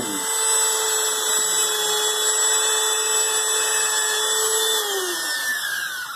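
Dremel mini rotary tool with a small sanding drum running at a steady high speed, then switched off near the end and winding down with a falling pitch.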